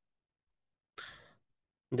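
A man's single short breath about a second in, fading over less than half a second; the rest is silent.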